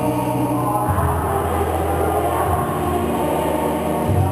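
A choir singing a hymn over sustained low notes, the chord underneath changing about a second in.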